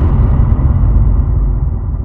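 The low rumbling tail of a boom or explosion sound effect, fading slowly away.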